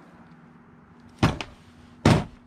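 A single short knock about a second in, from handling the recoil starter and hand tools over a plastic tray; otherwise quiet, with a faint steady hum.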